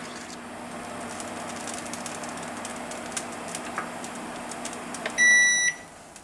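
Induction hob humming under a saucepan of milk, with light taps of a wooden spoon against the pan. About five seconds in the hob gives one loud electronic beep of about half a second as it is switched off, and its hum stops.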